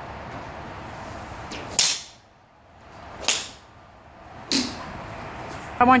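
Three sharp swooshes, each about a second and a half apart, of golf clubs swung fast through the air, over a steady faint background hiss.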